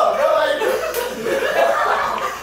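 People laughing and chuckling, mixed with indistinct talking.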